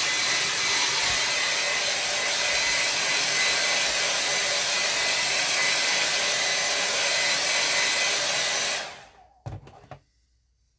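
Hair dryer blowing steadily to dry a watercolour painting, switched off near the end, followed by a light knock.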